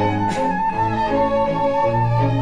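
Small orchestra's bowed strings playing an instrumental passage: one high melody note held with a slight waver, over lower parts that move beneath it.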